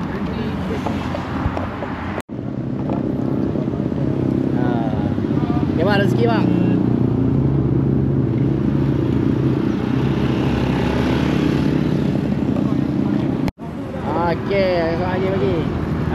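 A small motorcycle or scooter engine idling close by, steady and low, with voices over it. The sound drops out for an instant twice.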